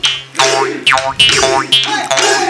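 Gogona, the Assamese bamboo jaw harp, plucked in a steady rhythm at about two twangs a second. Each pluck is a buzzing boing that dies away quickly over a low hum.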